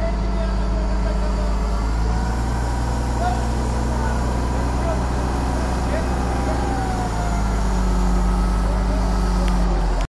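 Diesel engine of a truck-mounted hydraulic crane running steadily under load, powering the crane as it holds a suspended compact backhoe loader. The engine note grows a little stronger about seven seconds in.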